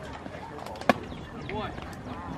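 A pitched baseball hitting the catcher: one sharp smack about a second in, over distant voices.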